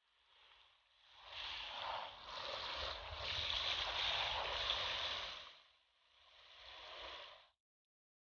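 Water from a garden hose spray nozzle splashing onto squash blossoms in a plastic bowl. The spray builds about a second in and runs strongly, drops away briefly, then comes back for a moment and cuts off suddenly just before the end.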